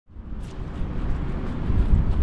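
Wind buffeting an action camera's microphone: a low, uneven rumble that fades in and slowly grows louder.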